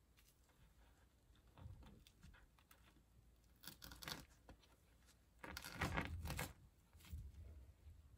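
Faint rustling and scraping of fabric being handled, as hands press and adjust a stuffed sock body on its shoe, in a few short bursts with the longest about two-thirds of the way in.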